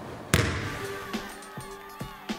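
A basketball bounce on a hard floor as an intro sound effect: one sharp bounce about a third of a second in that fades out, followed by a faint held musical note and a few light ticks.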